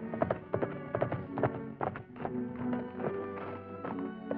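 Hoofbeats of a galloping horse over background film music with held notes. The hoofbeats are thick in the first two seconds and thin out after that.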